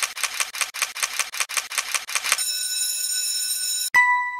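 Intro sound effects: a rapid run of camera-shutter-like clicks, about eight a second, for over two seconds, then a steady high shimmering tone. It ends in a sharp click and a bell-like ding that rings on.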